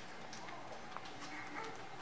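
Faint room tone with a few soft, scattered clicks, a pause between spoken phrases.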